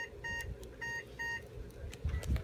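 Anesthesia patient monitor giving a quick series of short electronic beeps, stopping about a second and a half in, over a faint steady hum.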